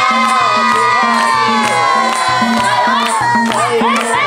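Madal hand drum playing a steady folk rhythm while the group claps along and cheers. Over it a long held note slides slowly downward through the first three seconds.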